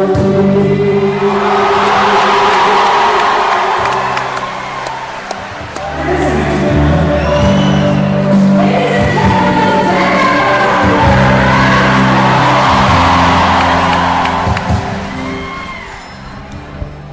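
Singing through a PA over amplified backing music, with a large indoor crowd cheering and screaming over it in waves.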